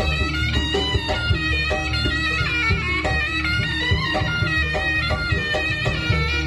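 Live jaranan ensemble music: a nasal, reedy shawm (slompret) plays a winding, ornamented melody over quick hand-drum strokes from the kendang and a sustained deep bass underneath.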